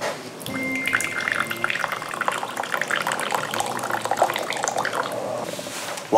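Tea being poured from a teapot into a small ceramic teacup: a steady trickling stream that stops near the end.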